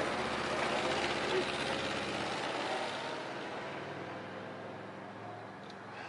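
A motor vehicle passing and fading away over the first few seconds, its noise dying down over a steady low engine hum.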